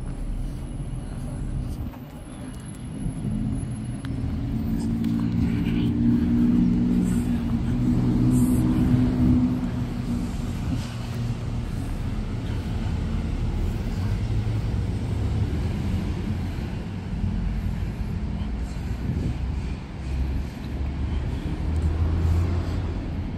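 Low rumble of a motor vehicle engine nearby, swelling for a few seconds and then going on steadily.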